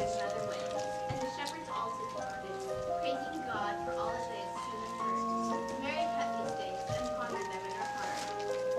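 A group of children singing a Christmas carol in unison, a slow melody of held notes that step from one pitch to the next.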